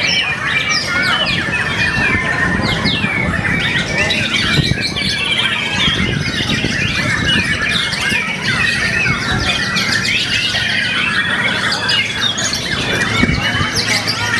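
White-rumped shamas (murai batu) singing, several birds at once: a dense, unbroken run of quick whistles, chirps and rattling trills. Crowd noise runs underneath.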